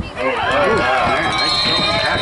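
Spectators yelling and cheering at once, many excited high-pitched voices overlapping; it breaks out suddenly about a quarter second in and stays loud.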